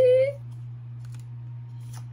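A child's shout ending in a rising pitch right at the start, then faint clicks and slides of trading cards being handled over a steady low hum.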